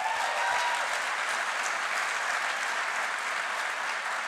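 Audience applauding steadily, many hands clapping in a large auditorium.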